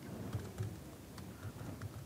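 Faint typing on a computer keyboard: a run of separate, irregular key clicks as a terminal command is entered.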